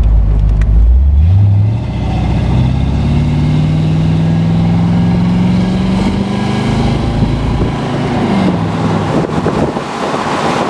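Chevrolet ZZ4 350 small-block V8 crate engine of a 1975 Corvette convertible pulling under acceleration, heard from inside the car. Its note climbs early on, rises slowly for several seconds, then drops near the end.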